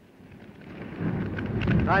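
Rumble and crackle of a large fire, building from faint to loud over about a second, deep and without any tone.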